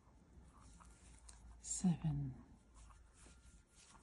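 Faint scratching and rustling of a Tunisian crochet hook working stitches through yarn, with one short, quietly spoken word about two seconds in.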